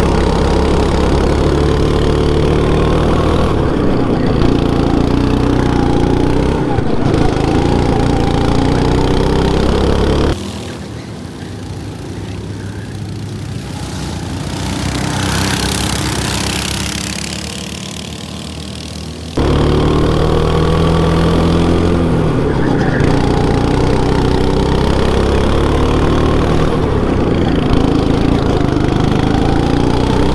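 Go-kart engine heard from the driver's seat, its pitch rising and falling as the kart accelerates and eases off through the corners. About ten seconds in it changes to a quieter pass-by: a kart's engine growing louder and then fading as it drives past. Near twenty seconds the loud onboard engine returns.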